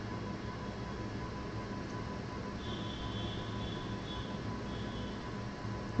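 Steady background hum and hiss of a home recording setup, with a thin constant whine. A faint high tone comes in about two and a half seconds in and fades out near five seconds.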